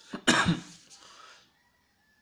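A man coughing once, a single loud burst about a quarter second in that trails off within about a second and a half.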